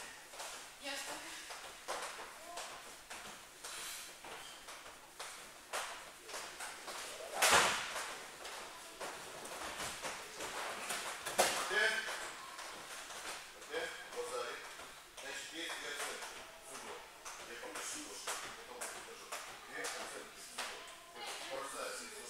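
Indistinct voices in a gym hall, with a heavy thud of a body landing on the wrestling mat about seven and a half seconds in and a lighter impact about four seconds later.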